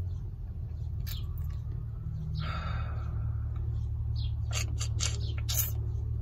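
Steady low hum of a vehicle's engine idling, heard from inside the cabin, with a short soft hiss about two and a half seconds in and a few faint clicks.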